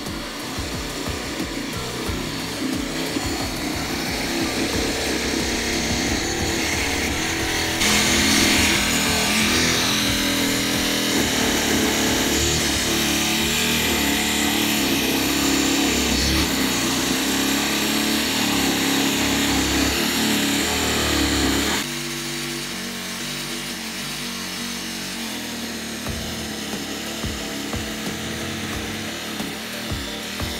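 Small electric toy scroll saw running, its fine reciprocating blade cutting a pony shape out of thin softwood board: a steady buzz, louder for a stretch in the middle.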